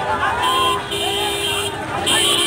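A crowd of people shouting over one another, with a car horn sounding in a few honks, one short and one longer, through the middle of it.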